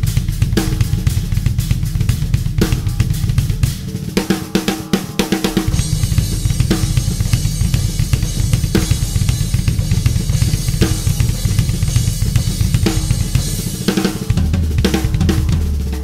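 Tama drum kit played in a heavy groove: bass drum, snare backbeat and cymbals. The cymbals wash more brightly over the beat from about the middle on, with brief breaks in the pattern near a quarter of the way in and near the end.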